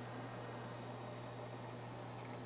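Quiet steady low hum with an even faint hiss; nothing starts or stops.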